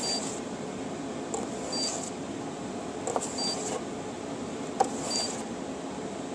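Edison robot's buzzer giving a short, high beep four times, about every second and a half to two seconds, as a block is swiped past its line-tracking sensor, each beep marking one item counted. A couple of sharp knocks from the block against the board fall near the middle and the end.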